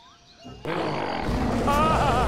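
Cartoon giant gorilla's roar, starting suddenly about half a second in after a brief hush, with background music under it.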